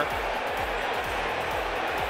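Steady ballpark background noise with music playing underneath, no commentary.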